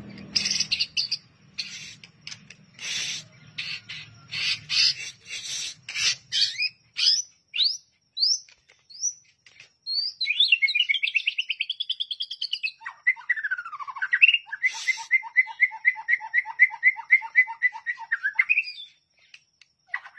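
White-rumped shama singing a varied song: short clipped notes, then a few rising whistles, a rapid warbling phrase about halfway through, a falling sweep and a fast repeated trill near the end.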